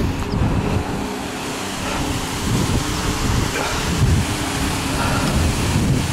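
Wind buffeting the microphone outdoors, a loud rumble that surges in gusts.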